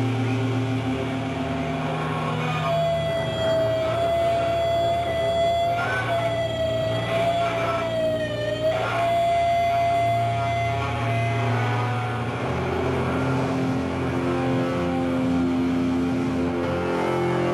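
Live folk-rock band playing an instrumental passage: a long held high note sounds over low droning notes, dipping briefly in pitch partway through before it fades.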